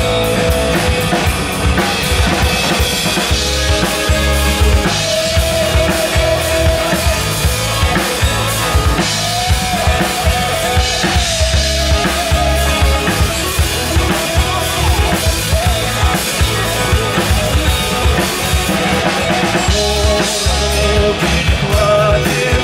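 Live rock band playing an instrumental passage: drum kit, bass and guitars, with a wavering lead melody on top.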